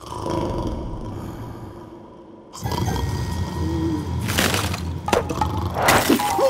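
Ice cracking and breaking as a cartoon sound effect. A low rumble starts suddenly and swells louder about two and a half seconds in, with sharp cracks a little past four seconds and again near the end.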